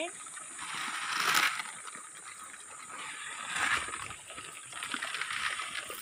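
Whole corn kernels flung from a bucket, scattering and pattering onto dry dirt, twice: a louder throw about a second in and another about three and a half seconds in.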